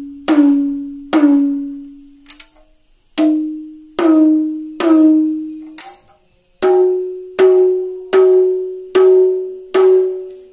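Small 6-inch rototom struck by hand about once a second, each stroke a clear pitched tone that rings and dies away. The pitch steps up twice, after short pauses about 2.5 and 6 seconds in, as the drum is tuned higher between groups of strokes.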